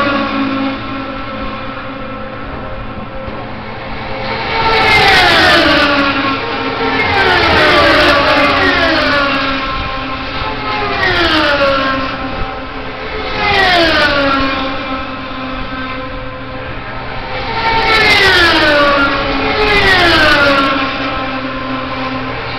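IndyCar race cars' Honda V8 engines passing at full speed down the straight, one after another every few seconds, each a high whine that drops sharply in pitch as it goes by.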